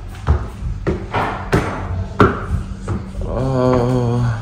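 Footsteps on a hard floor and stairs: a handful of separate knocks at uneven intervals, followed near the end by a short hummed vocal sound.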